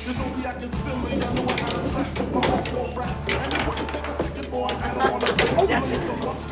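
Table football game in play: the ball and the figures on the steel rods knock and clack in quick, irregular strikes, over background music.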